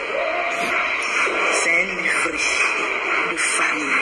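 A person talking, heard over a steady hiss.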